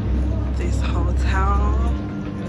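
A steady low rumble that cuts in and cuts off abruptly, with a voice briefly in the middle.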